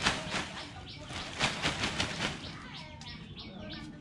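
A run of sharp knocks and rattles over the first two seconds, then birds chirping with short falling chirps.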